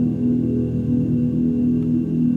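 A long E major chord struck on several pianos at once, starting suddenly and ringing on steadily without fading.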